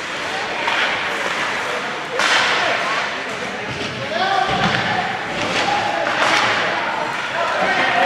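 Ice hockey rink sounds: a loud bang against the rink boards about two seconds in, with a duller thud and another knock later, among spectators' voices calling out.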